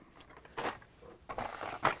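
Light clicks and rustling of plastic blister-packed toy cars on cardboard cards being handled and drawn out of a cardboard case, the loudest click near the end.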